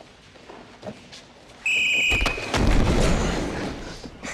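A whistle gives one short steady blast about one and a half seconds in. As it ends, a wrestler is slammed onto the mat with a heavy, low thud that rumbles and fades over about a second.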